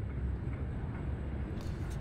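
Steady background noise with a low hum underneath and no distinct events.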